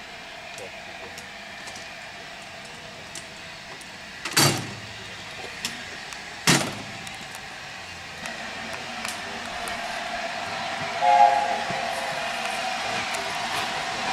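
Two heavy metallic clunks about two seconds apart, as levers of a railway ground frame are worked. About eleven seconds in comes a short toot from the chime whistle of LNER A4 steam locomotive 60009, three notes sounding together. A steady noise then builds up behind it.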